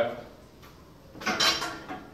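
A steel barbell clinking and rattling briefly about a second in as it is carried forward to the squat rack to be set down.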